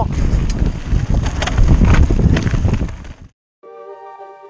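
Wind buffeting the microphone of a camera riding on a mountain bike at speed, with rattling from the tyres and bike over a dirt trail. It cuts off suddenly about three seconds in, and quiet music with steady sustained notes begins.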